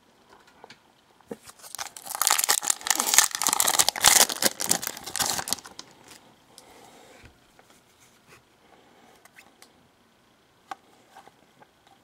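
A trading card pack's wrapper crinkling and tearing as it is ripped open, loud for about four seconds starting about two seconds in. Then faint clicks of the cards being handled.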